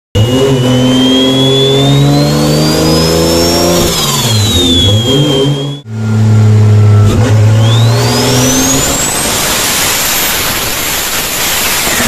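Turbocharged engine fitted with an HKS GT6290 turbo being revved. The low engine note rises and falls, and a high turbo whistle climbs and falls with it. After a brief dropout about six seconds in, a second whistle climbs steeply as the engine is revved again.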